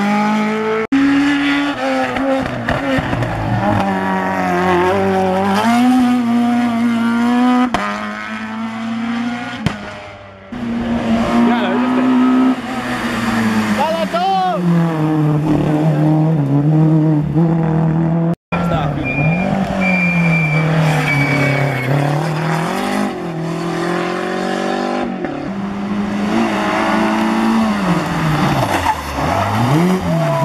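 Rally-prepared hatchback engines, Peugeot 205s among them, revving hard through tight hillclimb corners. The pitch climbs and drops over and over with lifts and gear changes, with some tyre squeal. The sound cuts abruptly several times from one car to the next.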